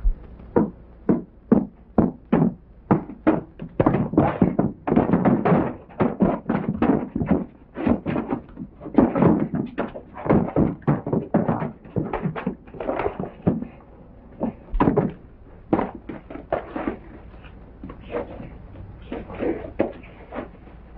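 Movie fistfight between two men: a rapid, irregular run of thuds and knocks from blows and bodies hitting boards, with scuffling between them, heaviest in the middle and thinning out toward the end.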